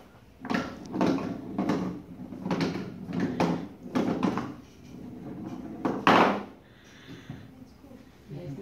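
Indistinct speech broken by knocks, with one loud knock about six seconds in.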